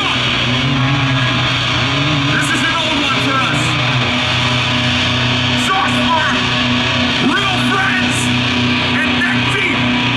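Metalcore band playing live at full volume through a PA: distorted electric guitars, bass and drums, with a vocalist singing into a handheld microphone.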